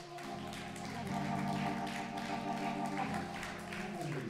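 Soft sustained organ chords, the chord changing about a second in and again about three seconds in.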